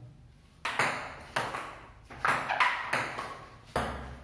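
Table tennis rally: the ball being struck by paddles and bouncing on a wooden table, a run of about five sharp, briefly ringing clicks less than a second apart.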